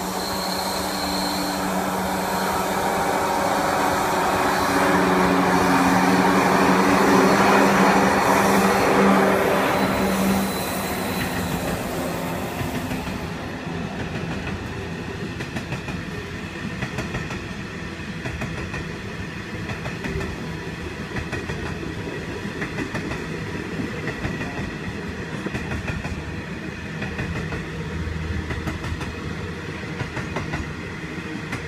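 Two 90 class diesel-electric locomotives heading a coal train pass close by. Their engine drone is loudest about six to ten seconds in and fades away by about twelve seconds. The long line of coal hopper wagons then rolls steadily past, wheels running on the rails.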